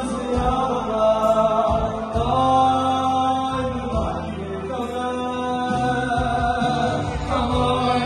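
Live Jewish Hasidic song: a boy soloist and men's voices singing held, melismatic lines into microphones, amplified, over an electronic keyboard accompaniment with a moving bass line.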